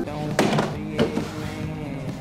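Soft background music with held notes, over two dull thuds about half a second apart as plastic gallon jugs are set down on a wooden bar counter.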